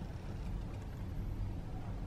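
Steady low rumble of background noise, with no distinct event.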